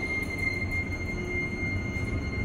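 Tejas freight elevator car travelling between floors: a steady low rumble with a thin, constant high whine over it.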